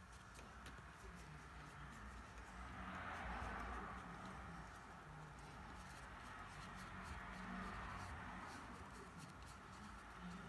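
Paintbrush dabbing and stroking across watercolour paper, a faint soft scratching that swells a little about three seconds in.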